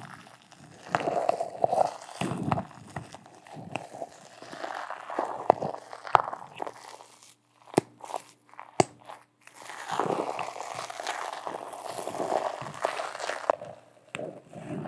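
A slim metal tool digging and scraping into crumbly blue material packed in a glass jar, close to the microphone: irregular crunching and scratching in clusters. A quieter stretch just past the middle is broken by a few sharp clicks.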